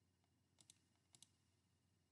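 Near silence, broken by four faint clicks in two quick pairs about half a second apart.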